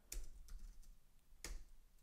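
A few faint, scattered keystrokes on a computer keyboard, typing a short piece of code.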